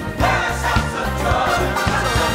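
Upbeat gospel praise song: a choir singing over a band with bass and drums.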